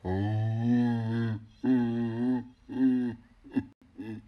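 A man's drawn-out vocal groans, held on a steady low pitch: one long one of over a second, then two shorter ones and a brief one near the end.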